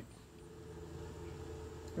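A faint steady hum made of several held low tones.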